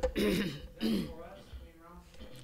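A man clearing his throat, a sharp rasp at the start followed by a couple of short low vocal sounds.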